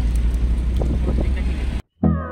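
Steady low rumble of engine and road noise inside the cabin of a moving Hyundai car. It cuts off abruptly just before the end.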